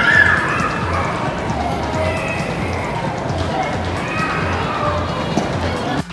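Music with a steady beat and a melody line over it.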